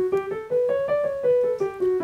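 Piano playing a D major scale one note at a time, stepping up to the upper D about halfway and then back down.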